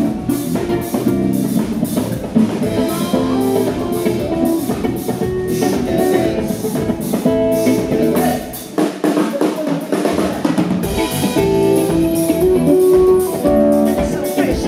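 Live band playing a funk/soul groove on drum kit, bass guitar, electric guitar and keyboards. A little past halfway the bass and kick drop out for about two seconds, then the full band comes back in.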